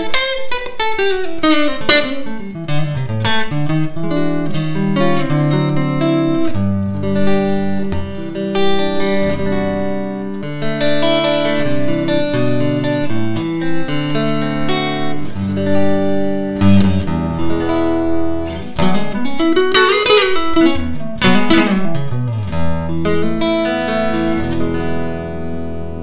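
G&L Legacy electric guitar played with a clean tone through a Trooper Electronic SS25 amplifier: a run of picked notes and chords with a few sliding notes, one rising and falling about three-quarters of the way through.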